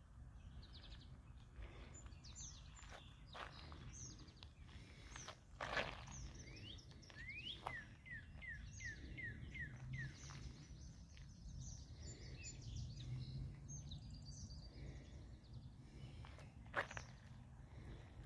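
Quiet outdoor ambience with a faint low background rumble and birds chirping, including a quick run of about eight short falling chirps near the middle. A few faint clicks punctuate it, the sharpest one near the end.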